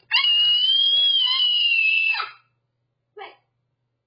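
A young child's loud, high-pitched scream, held for about two seconds, its pitch rising slightly and then falling away, followed by a short vocal sound about a second later.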